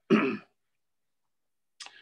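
A man briefly clearing his throat, followed by a short sharp click near the end.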